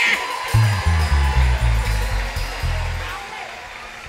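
Band music with a run of low bass notes that stops about three seconds in, the level then dropping away.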